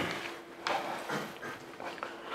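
Quiet room tone with a steady low hum and a few faint, brief noises.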